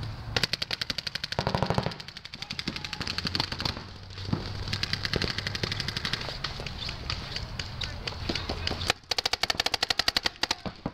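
Paintball markers firing rapid strings of shots, many pops a second, from several guns at once. The loudest, closest strings come in the first two seconds and again near the end, with fainter, farther fire between.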